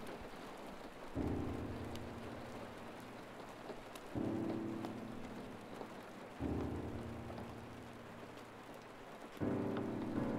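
Steady rain falling. Over it, a low sustained musical chord is struck four times, about every three seconds, each time starting suddenly and fading slowly.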